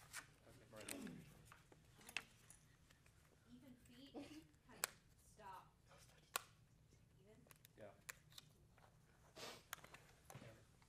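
Near silence with faint, distant speech that cannot be made out, and a few sharp clicks or taps.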